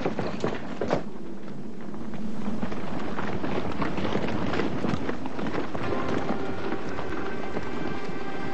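Many soldiers' footsteps running in a charge, a dense clatter that grows louder about two seconds in. Music comes in under it near the end.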